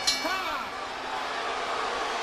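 Boxing ring bell struck to end the round, the last stroke right at the start, its clear metallic ring dying away over about half a second.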